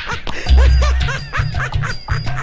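Comedic film background music with a heavy, pulsing bass beat and quick runs of short squeaky notes that rise and fall, sounding like a cartoonish laugh.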